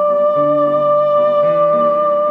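Soprano saxophone holding one long steady note while a grand piano plays changing chords beneath it, in a live jazz saxophone and piano duo.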